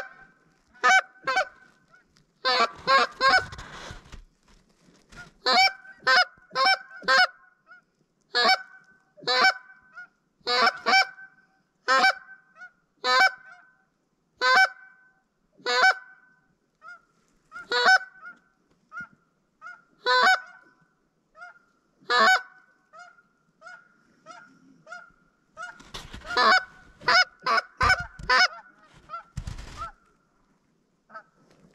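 Loud goose honks and clucks in quick runs of two or three, roughly one run a second, with fainter, shorter honks between them in the middle and a dense burst of calling near the end.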